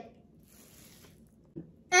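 Near silence: faint room tone, with a brief soft sound about a second and a half in.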